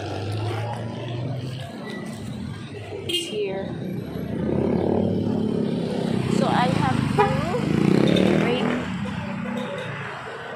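Street traffic: vehicle engines running close by, with a steady low hum that grows louder about halfway through. A woman's voice talks over it in the second half.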